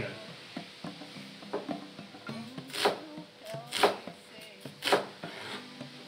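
Background music, with a chef's knife slicing red onion on a plastic cutting board: small knocks and three louder, sharp strokes about a second apart in the middle.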